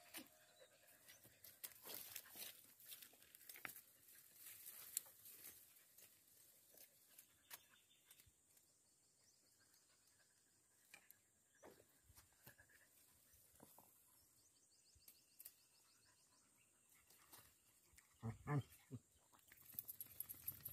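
Near silence with faint, scattered rustles and small clicks from wild amaranth stems and leaves being picked and handled.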